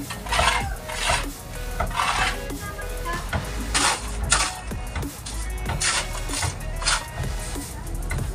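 Mason's trowel scraping cement mortar onto a concrete hollow-block wall in several short, separate strokes, with background music underneath.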